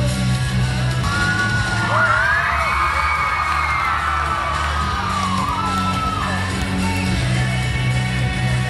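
Recorded music for a stage skit playing through a large hall's sound system, with a steady bass line. From about two seconds in until six and a half, high sliding, wavering notes rise and fall over it.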